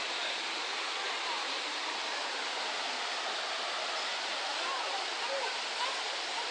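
A steady rush of flowing water, even and unbroken, with faint voices heard in the background toward the end.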